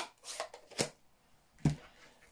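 Rubber-stamping supplies being handled on a craft table: four short crisp rustles and clicks, the last, about two-thirds of the way through, a duller knock.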